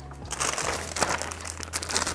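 Paper grocery bag rustling and a plastic bag of cherries crinkling as the bag of cherries is pulled out of the grocery bag, a dense run of crackles.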